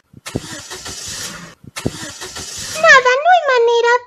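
Car engine cranking twice, each try lasting about a second and sputtering out without catching: an engine that won't start because the tank has run out of petrol.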